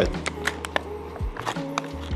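Background music with scattered crackles and clicks from a clear plastic coffee bag as its resealable zip is pulled open.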